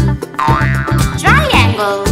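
Bouncy children's-song backing music, with a swooping sound that rises and falls in pitch about one and a half seconds in.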